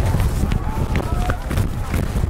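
Wind rumbling on the microphone, with distant voices of spectators and coaches shouting, too faint to make out.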